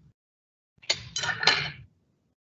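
Kitchen utensils clinking and scraping against a dish: a short run of about three quick strokes lasting about a second, starting nearly a second in, as mascarpone is spooned into the mixing bowl.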